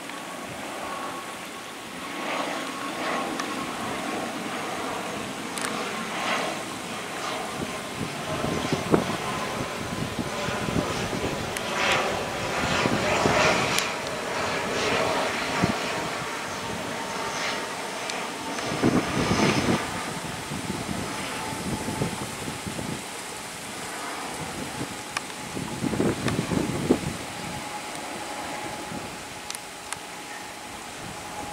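ATR 72-600 twin-turboprop airliner flying low overhead on landing approach: a steady propeller drone with a high tone that drops a little in pitch as the aircraft passes and moves away. Louder rough rushing swells come and go through it.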